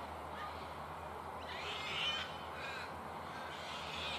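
A bird calling: a cluster of calls about halfway through, the loudest sound here, then a fainter call and another brief call near the end, over a steady low background hum.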